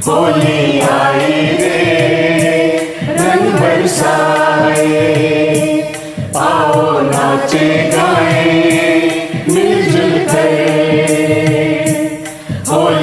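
Hindi Holi song music: choir-like voices in phrases of about three seconds over a steady percussion beat.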